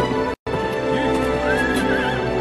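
A horse whinnies in a wavering cry in the second half, with hoofbeats, over background music. The sound cuts out briefly about half a second in.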